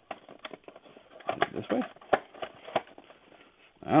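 Cardboard trading-card box being turned and pried at by hand, with scattered light clicks, taps and scrapes of the flaps and card stock, and a quiet muttered "This way?" about a second and a half in.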